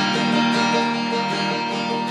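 Acoustic guitar played through a small amplifier, strummed in a steady rhythm with the chords ringing on.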